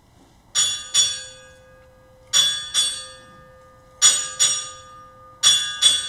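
A ship's bell struck in four pairs (ding-ding, ding-ding, ding-ding, ding-ding), each strike ringing on. These are naval arrival honors: eight bells for a four-star admiral.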